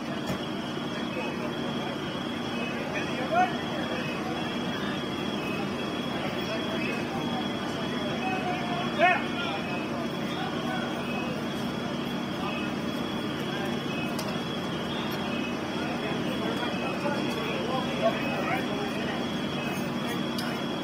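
Steady drone of idling emergency-vehicle engines under indistinct voices of responders, with a few brief louder noises about three and a half, nine and eighteen seconds in.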